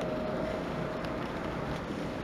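Pause in speech: steady background noise of the room and recording, with a faint steady tone that fades out just past halfway.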